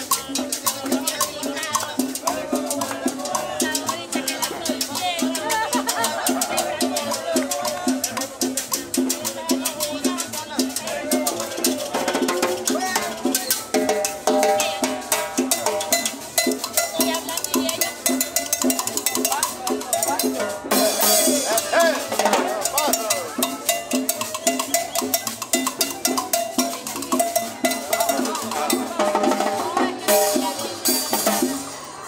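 Live salsa music from a band with drums and percussion, playing a steady dance beat. The sound gets brighter and fuller about two-thirds of the way through.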